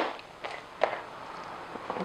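Parchment paper being pulled and handled: a few short rustles and soft taps, then a faint rustle.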